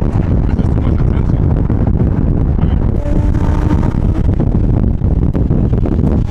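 Car engine pulling hard under acceleration, mixed with heavy wind rush on the microphone from riding in a convertible with the top down.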